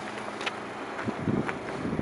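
Wind buffeting the microphone in low gusts, starting about a second in, over faint outdoor background noise.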